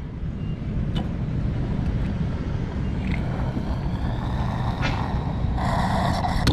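Gasoline flowing from a pump nozzle into a Chevy Impala's fuel filler while the tank is topped off after the automatic shutoff has tripped once, over a steady low rumble. There is a single click about a second in, and the flow turns to a louder rush near the end as the tank nears full.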